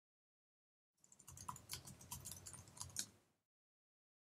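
Faint typing on a computer keyboard: a quick run of keystrokes entering a short terminal command, starting about a second in and stopping a little before the end.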